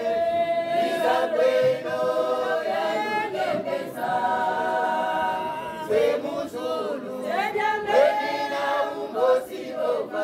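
A choir of mostly women's voices singing unaccompanied in parts, with long held notes and quicker sliding phrases about two-thirds of the way through.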